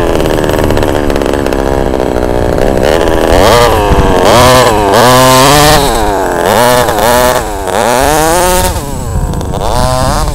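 26cc two-stroke gas engine of an HPI Baja SS radio-controlled buggy, running steadily at first, then revved up and down about five times as the buggy accelerates and turns, its pitch rising and falling with each burst of throttle.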